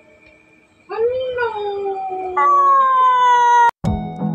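A single long howling cry, starting about a second in. It rises and falls, jumps up in pitch about halfway, then glides slowly down and is cut off suddenly near the end.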